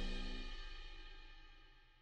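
The ringing tail of a short intro jingle's final hit: cymbal and instrument tones dying away steadily and fading out about a second and a half in.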